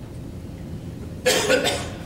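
A person coughing: two quick coughs a little over a second in, in a pause in a lecture hall.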